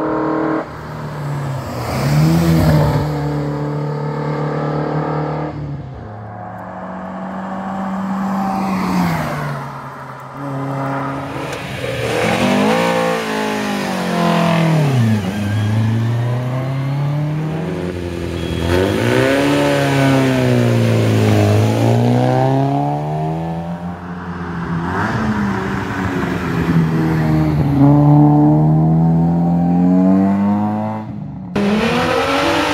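Historic rally and competition cars accelerating hard up a hill-climb course, one after another. The engines rev up, drop in pitch at each gear change, then climb again. The loudest stretch is near the end.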